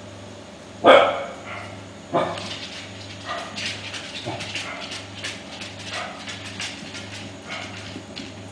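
Pembroke Welsh Corgi puppies barking as they play: one loud bark about a second in, another a little after two seconds, then several softer yips.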